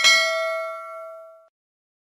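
Notification-bell chime sound effect: a single bright ding with ringing overtones that fades out over about a second and a half.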